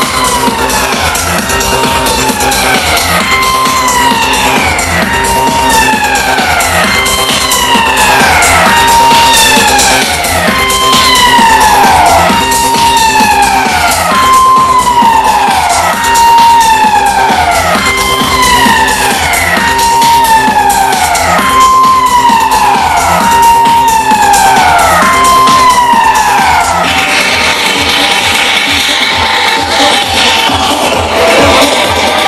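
Loud live big-beat electronic music: a siren-like synth wail holds its pitch and then falls, repeating about every two seconds over a steady beat. Near the end the bass drops away and a hiss fills the highs.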